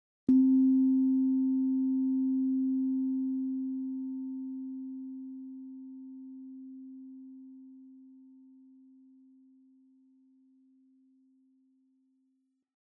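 A meditation bell struck once, ringing with a low clear tone and faint higher overtones that slowly fades out over about twelve seconds.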